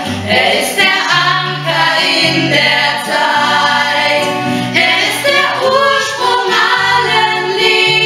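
A small group of women singing a German Christian song together, accompanied by an acoustic guitar.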